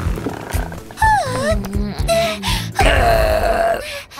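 A cartoon character's wordless vocal sounds over children's background music with a steady beat: a short gliding vocalization about a second in, then a longer, rougher one near the three-second mark.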